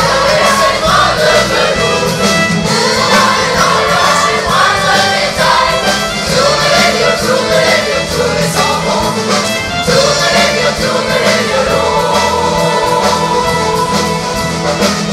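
Youth choir singing with a live pop band of keyboards, guitars and drum kit.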